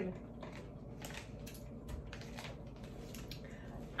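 Faint, scattered crinkles and small clicks of a plastic snack wrapper being handled.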